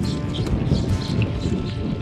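Gravel bike rolling on a dirt road: an uneven rumble of tyres and wind, with a short high chirp from the bike about a second in, under background music.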